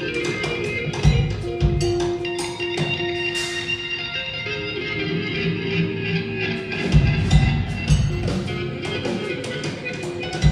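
A band playing live: held notes ringing over drum hits, with a run of heavier drum beats about seven seconds in.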